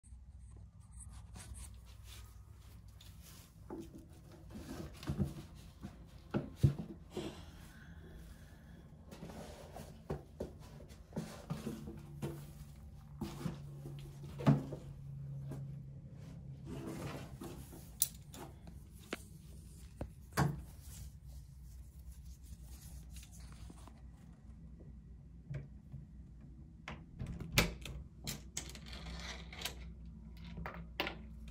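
Irregular knocks, clicks and rustles of close handling and movement at a door in a small room, with leash and collar hardware among them; a few louder knocks stand out.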